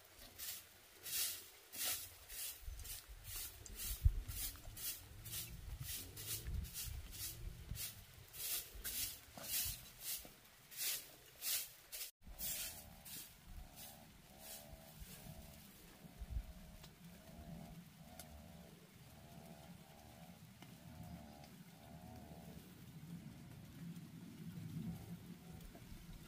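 A grass broom sweeping a dirt and stone floor in brisk scratchy strokes, about two a second, which stop suddenly just after halfway. After that the sound is quieter, with a faint wavering animal call repeating about once a second.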